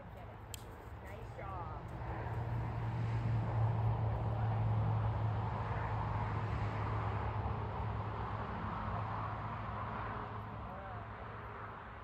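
A passing engine: a low steady hum that swells over a few seconds and then slowly fades away.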